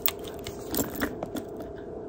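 A leather handbag with a gold metal chain strap being handled up close: light scattered clicks and rustles from the chain links and leather, over a faint steady hum.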